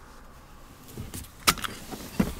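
Low steady hum inside a car's cabin. About halfway through it is joined by a quick run of sharp clicks and rattles.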